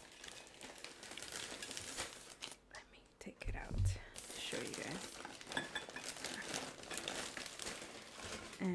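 Crinkling packaging handled close to the microphone, a run of dense crackles, with a dull thump against the mic about three and a half seconds in.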